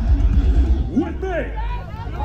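Shouted voices rising and falling in pitch over a heavy low rumble from the stage PA at a loud metal concert, the level dipping briefly near the end.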